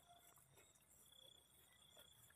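Near silence, with faint, steady cricket chirping in the background.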